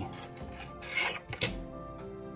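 Nickels being handled on a wooden tabletop: a few short clicks and scrapes of coins against wood, over faint background music.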